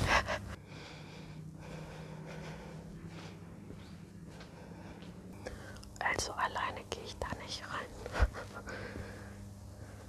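A woman whispering in short stretches from about six seconds in, over a faint steady low hum. There is a single dull thump a couple of seconds later.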